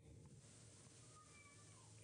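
Near silence: faint room tone, with one very faint, short pitched call that falls in pitch at its end, a little after a second in.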